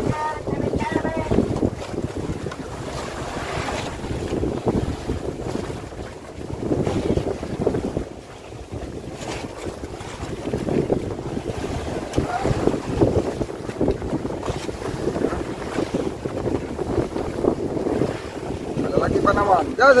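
Wind buffeting the microphone over open sea, with water washing and splashing against the hull and outriggers of a small outrigger fishing boat, the noise surging up and down every second or two.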